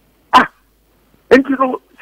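A single short, loud vocal outburst from a man close to the studio microphone, like a bark. About a second later a man starts speaking over a telephone line, his voice thin and cut off in the highs.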